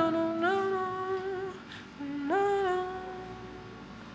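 Female voice singing wordless, humming-like notes, sliding up into each held note: one long note, then a shorter second one about two seconds in. After that it fades to faint held tones.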